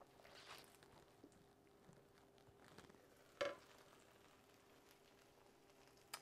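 Very faint sizzling of hot, burnt caramel and popcorn just turned out of a frying pan into a glass bowl. One brief knock comes about three and a half seconds in.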